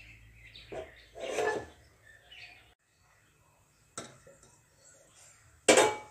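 A wooden spatula stirring cooked varagu rice in an aluminium pressure cooker pot: soft, faint stirring sounds, then a short loud scrape of the spatula in the pot near the end.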